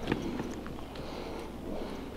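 Quiet footsteps and rustling through dry leaves and twigs on a forest floor, with a few faint scattered crackles over a low steady rumble.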